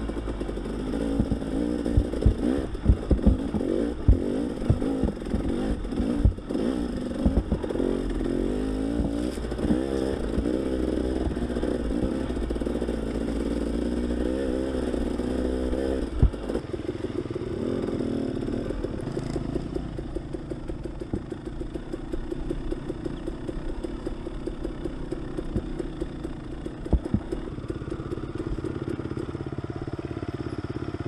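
Dirt bike engine running on a rough, rocky trail, its pitch rising and falling with the throttle, with sharp knocks and clatter from the bike over rocks, most of them in the first half. Past the middle it settles to a steadier, lower running.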